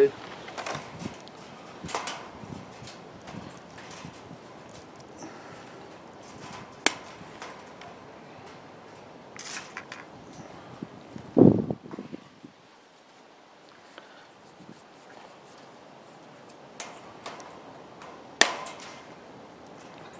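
Scattered sharp metallic clicks and ticks of galvanized wire mesh and pliers as hardware cloth is pressed against the armature and wire ties are twisted. A single louder thump comes about midway.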